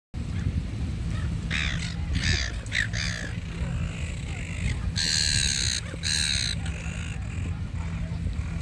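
Silver gulls calling: a few short squawks in the first few seconds, then two longer calls around five and six seconds in, over a steady low rumble.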